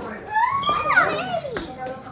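Children squealing and shouting while playing, one high voice sliding up and down in pitch for about a second, then a shorter, steadier cry near the end.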